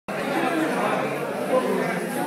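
Chatter of a crowd of people talking over one another in a room, with no single voice standing out.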